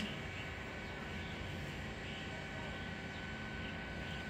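A steady, even rush of background noise, with no distinct foreground sound.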